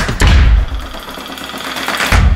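Cinematic intro music sound effects: a deep bass boom hits just after the start and dies away, then a second sharp hit lands at the very end as the logo appears.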